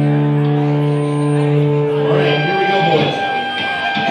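Electric guitars ringing out one long held chord, which fades about two and a half seconds in. A higher sustained note carries on after it, over crowd chatter in the room.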